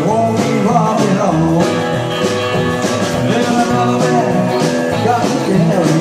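Live rockabilly band playing a rock and roll number on electric guitar, electric bass guitar and drums, with no words sung.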